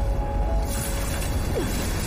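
Fantasy-film soundtrack: held music notes over a deep rumble, then a rushing whoosh of a magic sound effect swells in less than a second in, with short falling swoops near the end.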